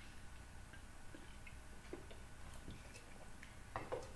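Faint swallowing and soft mouth clicks as someone drinks from an aluminium drink can, a few irregular small ticks spaced under a second apart, with a couple of sharper clicks near the end.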